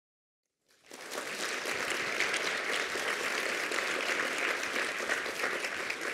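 Audience applauding, starting about a second in and dying away near the end.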